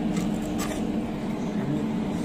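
A steady low hum, with a few faint light clicks from a thin steel plate being handled.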